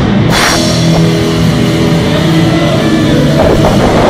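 Live heavy rock band playing loud: distorted electric guitars and bass with a drum kit. A cymbal crash comes right at the start, the chords ring out held, and the drums pick up again near the end.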